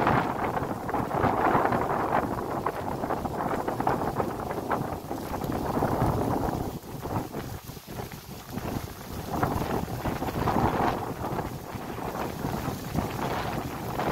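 Wind buffeting the microphone, a rumbling rush that rises and falls in irregular gusts, with a lull about halfway through.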